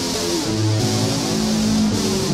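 Les Paul-style electric guitar played through a Behringer UM300 distortion pedal and a small amp: a sustained, distorted lead line with a bent note about half a second in, then a long held note.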